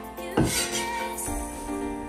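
Background music with held notes, and one knock of a cleaver on a wooden cutting board about half a second in.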